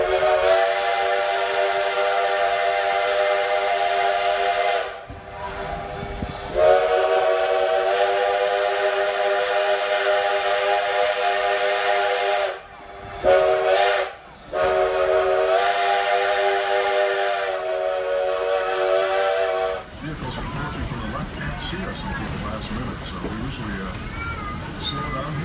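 Steam locomotive No. 110's chime whistle sounding several tones at once, blown as two long blasts, one short and one long: the standard grade-crossing signal. After the last blast, the train's running noise continues.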